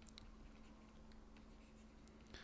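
Near silence: faint scattered ticks and scratches of a stylus writing on a tablet, over a faint steady hum.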